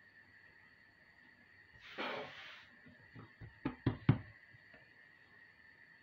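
A brief swish of flour being dusted over a countertop, followed by a few light knocks on the counter, the sharpest about four seconds in.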